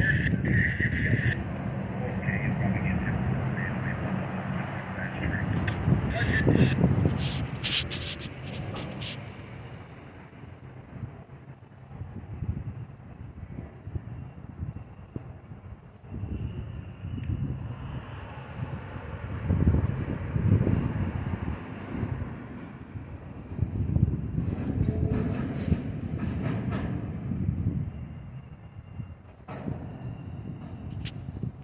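Freight cars rolling slowly past on rails: a low, uneven rumble of wheels, with a squeal in the first seconds. Two runs of sharp metallic clanks and screeches come at about a quarter of the way in and again near the end.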